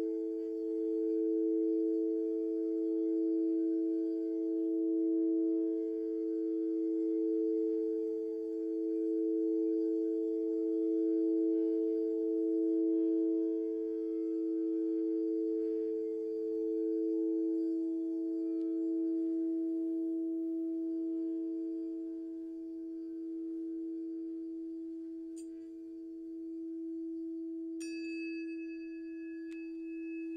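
Quartz crystal singing bowls ringing in two sustained low tones that beat against each other in a slow, even wavering pulse, fading gradually in the second half. Near the end a bright, high ringing tone starts suddenly as a metal tuning fork is struck.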